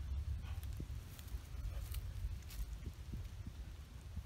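A steady low rumbling roar, like the roaring of a jet engine and way too loud for where it is, with a few faint rustles and clicks over it.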